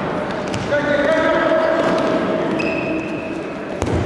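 Futsal players shouting calls to each other, echoing in a large indoor sports hall, with a single sharp knock of the ball being struck just before the end.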